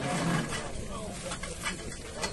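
Voices calling out over outdoor noise, with a few sharp knocks in the second half.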